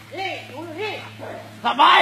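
A dog whimpering and yelping in three short rising-and-falling cries in the first second, in distress just after being freed from a constricting snake's coils.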